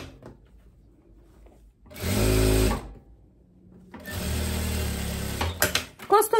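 Industrial single-needle sewing machine (Jack) stitching in two short runs: one of about a second, then after a brief pause one of about a second and a half, each a steady motor hum that starts and stops abruptly.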